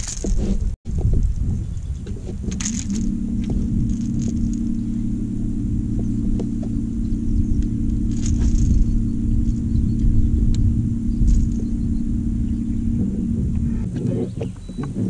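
Electric trolling motor on a bass boat running with a steady hum, over a constant low rumble of wind and water on the microphone.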